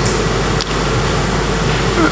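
Steady hiss over a low hum, with no speech: background noise of the hall recording.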